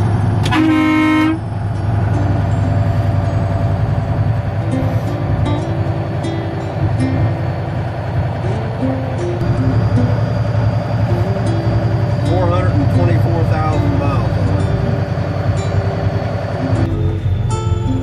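A semi truck's horn gives one short blast about half a second in, over the steady low drone of the truck's diesel engine heard from inside the cab.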